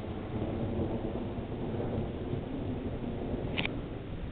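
Low, drawn-out rumble of distant thunder from an approaching thunderstorm, swelling slightly mid-way. There is a brief high-pitched blip near the end.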